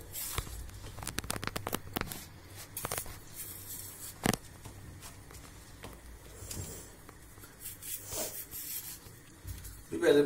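Knife cutting long green peppers and peppers handled on a wooden cutting board: a run of light clicks in the first three seconds, one sharper knock a little after four seconds, then quieter handling.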